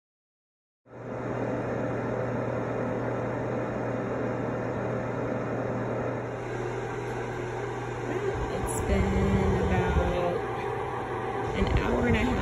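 Presto Dehydro food dehydrator running with a steady low hum. About three-quarters of the way through there is a click, followed by louder irregular bumps.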